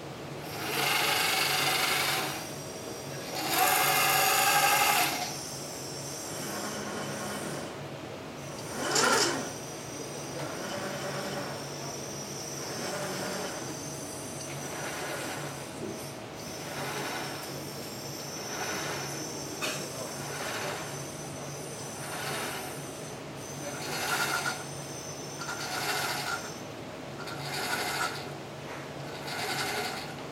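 Joint motors and gear drives of a 7-DOF robot arm whirring in repeated bursts as the arm moves, over a steady low hum. The two loudest, longest bursts come near the start, with a short sharp one about nine seconds in.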